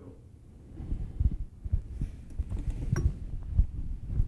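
Handling and movement noise: low, irregular thumps and rustle as metal regulator parts are lifted out and carried off by hand, with a light click about three seconds in.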